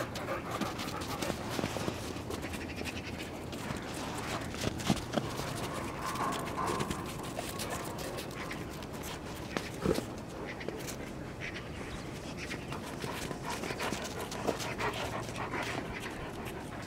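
Central Asian shepherd dog panting with its tongue out after play, with a couple of brief knocks.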